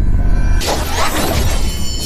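Animation sound effects for an explosion of fiery energy: a deep rumble, then a sudden loud crashing burst about half a second in, over background music.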